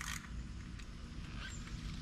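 A few faint, light clicks of hand tools and parts being handled in a car's engine bay, over a steady low outdoor rumble.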